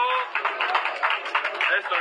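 Only speech: a man commentating in Spanish.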